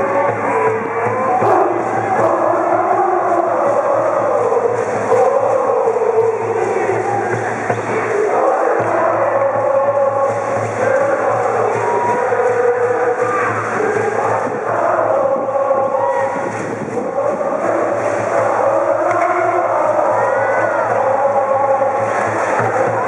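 High school brass band playing a baseball cheer song from the stands, with the massed cheering section singing and shouting along. The music is loud and continuous.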